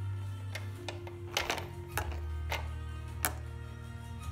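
Soft background music with sustained notes, broken by about six sharp plastic clacks, the loudest about a second and a half in and near the end, as the baby knocks and rattles the activity centre's plastic spinner toys.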